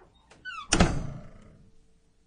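A door swinging shut: a short squeak, then one heavy thud about three-quarters of a second in that dies away over about a second.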